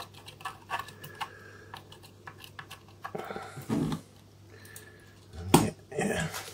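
A small metal tool scraping and clicking against leaked, corroded batteries and powdery crust in a camera's plastic battery compartment, in quick irregular ticks. Near the end comes a single loud knock as the camera is handled over the counter.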